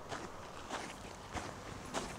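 Footsteps crunching on a gravel drive at a steady walking pace, four steps in two seconds.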